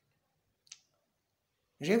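Near silence in a pause in a man's speech. It is broken by one short, faint click about two-thirds of a second in, and his voice comes back near the end.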